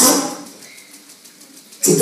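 A man preaching through a microphone and loudspeaker in a hall: a short loud exclamation at the start that fades away, a pause of about a second and a half, then his voice resumes near the end.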